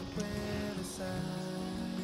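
Background music: a soft instrumental track of held notes that change every second or so.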